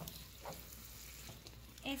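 Sauce sizzling in a hot skillet as a metal spoon stirs it through fried egg, with a couple of faint scrapes of the spoon against the pan.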